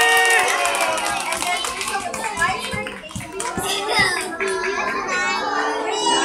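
Young children's voices holding a cheer that ends about half a second in, followed by a couple of seconds of scattered hand clapping, then children chattering.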